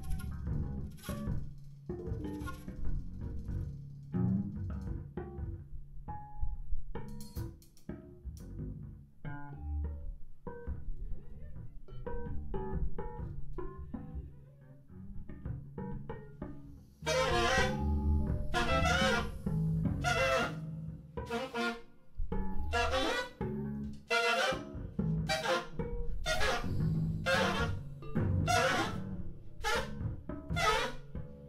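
Free-improvised jazz: a bass guitar plays plucked low notes with light drum-kit and cymbal touches. About halfway through, the drums come in hard with regular loud strikes, roughly one a second.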